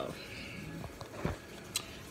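Faint, soft handling sounds of a metal spoon in a bowl of tuna salad, with a few small clicks and a dull knock about a second and a quarter in.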